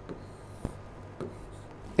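Faint scratching of a stylus drawing a line on a digital board, with a light tap of the pen about two-thirds of a second in.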